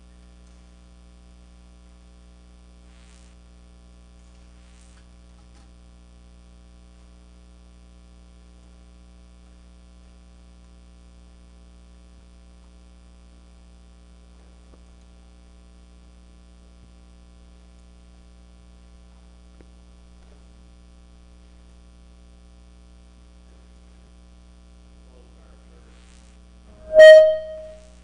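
Steady electrical mains hum, a buzz of many even tones, heard under a quiet room, with a couple of faint brief sounds a few seconds in.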